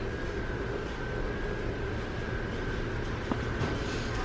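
Steady low rumble and hiss of a large store's ventilation and background, with a faint, thin, steady high tone running through it. A single small click about three seconds in.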